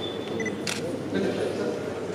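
Indistinct murmur of people talking in a room, with a short high beep at the start and a single sharp camera-shutter click about two-thirds of a second in.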